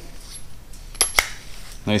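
Two sharp metallic clicks about a fifth of a second apart, about a second in, as an aluminium clutch-cable firewall adjuster is fitted onto the cable and checked for a tight fit.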